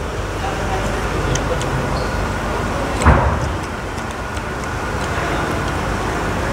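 Steady background rumble and hiss, like road traffic, swelling louder about three seconds in.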